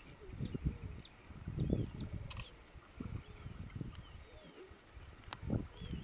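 Lionesses growling in several short, low, rough bouts while holding down a wildebeest at the kill.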